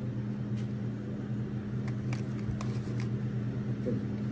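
Steady low mechanical hum, with a few faint light clicks scattered through it.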